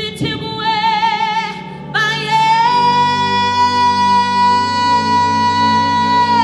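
A woman singing a worship song into a microphone over sustained accompaniment chords: a short phrase with vibrato, then from about two seconds in a long held high note.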